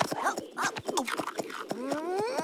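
Cartoon character voices making short wordless cries, over a fast run of clicks. Near the end a smooth rising swoop begins.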